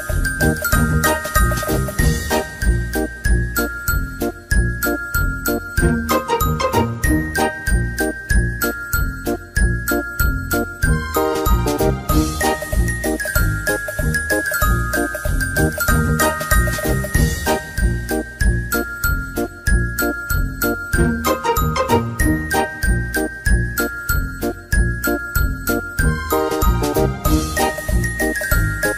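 Background music: a tinkling, bell-like melody that steps downward in short runs over a steady beat, the same phrase coming round again and again.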